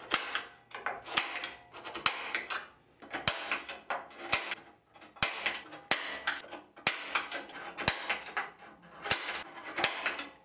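Red-handled ratcheting hand tool with a small bit clicking in short bursts about once a second as it is twisted back and forth against an aluminium rail.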